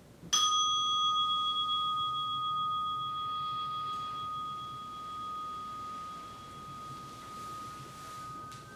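A meditation bell struck once, a clear ringing tone that fades slowly over the following seconds, signalling the end of a 30-minute sitting.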